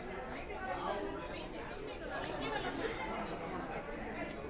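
Background chatter of many people talking at once in a crowded room, steady, with no single voice standing out.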